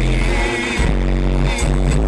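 A song with heavy bass and a drum beat playing loud through a car stereo, with a wavering sung vocal line over it.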